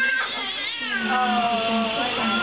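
High-pitched squealing vocal sounds from young children, one rising sharply in pitch at the start, then a longer, level squeal about a second in.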